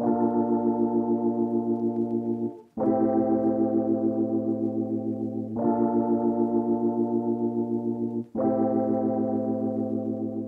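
Electric piano (an Arturia Analog Lab patch) playing four held, rolled chords, a new one about every three seconds, each one pulsing in volume several times a second.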